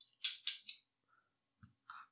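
Glass microscope slide being slid out of the metal stage holder of a microscope: four quick, sharp scraping clicks in the first second, then a couple of faint ticks near the end.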